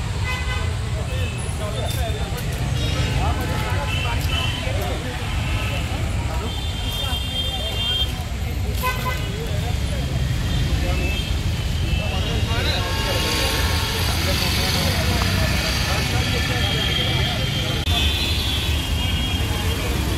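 Roadside street noise: a steady low traffic rumble with occasional short horn toots and background voices.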